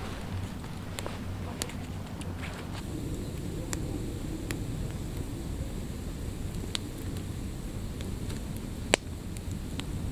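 Small campfire of sticks burning, giving a handful of sharp, irregular pops and crackles. Under it runs a steady low rumble of wind on the microphone.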